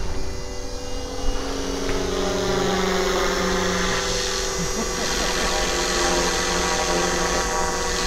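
Electric RC helicopter (Gaui Forza) flying overhead: the main rotor and motor give a steady whine that holds one pitch.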